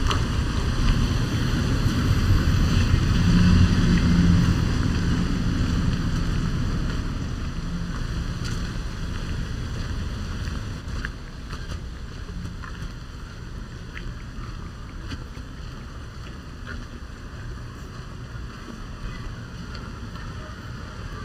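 Wind rumbling on the microphone, loudest in the first five seconds or so and then easing to a softer, steady rumble.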